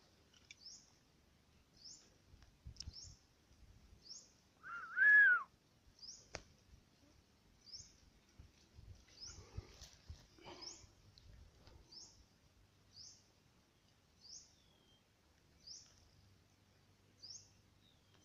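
A bird's high, thin chirp repeating about once every second and a half, with one louder whistled call that rises and falls about five seconds in.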